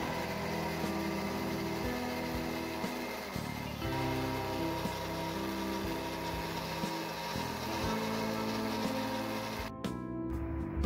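Electric mixer grinder running steadily, blending mint and coriander leaves with water into a chutney, with background guitar music over it.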